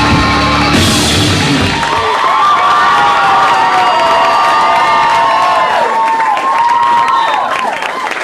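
A rock band ends its song: the full band rings out on a final chord with a cymbal crash about a second in, and the bass and drums cut off at about two seconds. Sustained electric guitar feedback tones carry on, bending and dipping in pitch, over crowd cheering.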